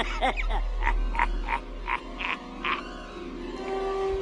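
A man's raspy cackling laugh, a string of short bursts about three a second, over a low steady drone.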